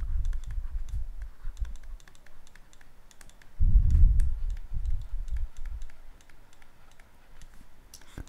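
Irregular light clicks and taps, several a second, with a low rumbling knock near the start and a louder one about three and a half seconds in.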